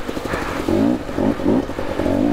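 KTM 250 TPI two-stroke engine revving in short rising bursts as the bike ploughs through a flooded rut, with the steady hiss of water spraying up from the wheels.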